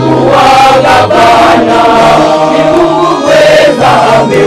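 A choir of male voices singing in several parts, with low bass notes held under the melody and changing about once a second.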